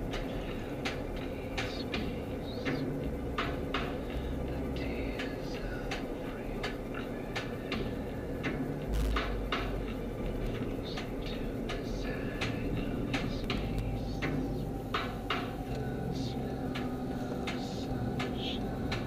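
Car interior noise while driving: a steady low engine and road rumble with frequent small, irregular clicks and rattles from the cabin.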